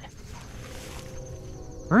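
Dry grass and brush rustling as a German shorthaired pointer noses through it hunting for a downed dove and a hand parts the stems, with a faint steady high-pitched tone behind.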